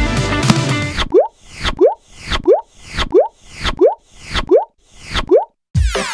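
Background music stops about a second in, followed by a series of seven cartoon pop sound effects, each a quick rising 'bloop', about one every two-thirds of a second. Electronic dance music with a beat starts just before the end.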